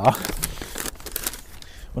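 Brown paper bag crinkling and rustling as it is handled, loudest in the first second.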